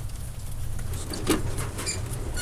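Fur farm shed ambience: a steady low rumble with scattered clicks and rattles, a louder knock about a second in, and a brief high squeak near the end.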